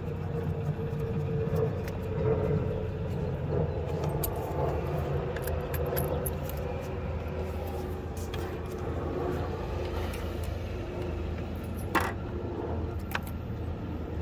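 Small metallic clicks and clinks of hand tools and parts under a car's hood as a compression gauge is fitted to a cylinder, with one sharper clack about twelve seconds in, over a steady low engine hum in the background.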